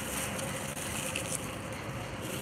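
Steady city street background noise with traffic in it.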